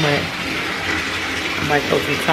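Bathtub tap running, a steady rushing hiss of water filling the tub.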